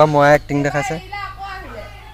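Speech: a voice calling a few short syllables in a sing-song way. These are followed by a fainter held tone that falls in pitch near the end.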